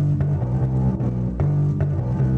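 Music led by a bass guitar playing a line of low, plucked notes.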